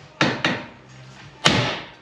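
Two sharp metal knocks, a steel bar striking a stuck part under a lifted car to knock it loose; the second blow, about a second and a quarter after the first, is the louder.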